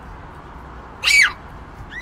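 A short, loud, high-pitched squeal that falls in pitch about a second in, with a second brief high cry starting at the very end, over a steady low background hum.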